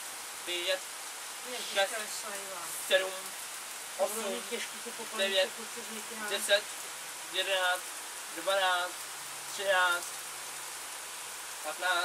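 Light rain falling, a steady soft hiss, with quiet voices talking on and off over it.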